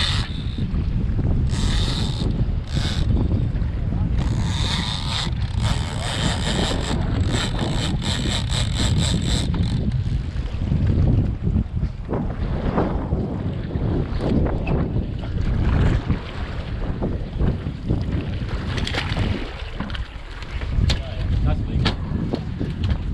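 Strong wind buffeting the microphone on a small boat on choppy sea, a loud steady rumble, with sharp hissy bursts and a short run of quick even ticks during the first ten seconds.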